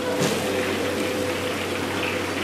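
Steady rushing noise and hum of a restaurant wok station as food is stir-fried, with a brief scrape of the ladle in the wok just after it starts.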